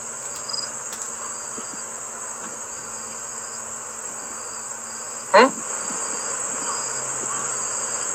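Crickets chirping: a constant high trill with a softer chirp repeating under it about every half second. One brief sliding sound cuts in a little past five seconds.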